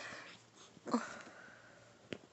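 A Chihuahua puppy at play with a plush toy, giving one short vocal sound that falls in pitch about a second in.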